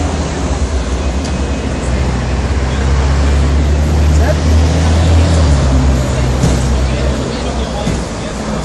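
Street traffic dominated by the low, steady rumble of a diesel bus engine. The rumble swells through the middle and eases near the end, with voices murmuring underneath.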